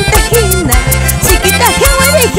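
Andean tipaki band music in an instrumental passage: a bending melodic lead over a repeating bass line and a steady, quick dance beat.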